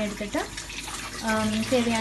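Background music with a singing voice holding long, gliding notes, over a steady hiss.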